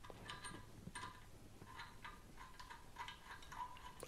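Faint, irregular light metallic clicks and scrapes as a braided stainless steel supply line's nut is threaded by hand onto a faucet's copper supply tail.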